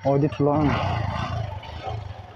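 Yamaha motorcycle engine running just after starting, its exhaust louder about half a second in and then easing off. A brief voice is heard at the start.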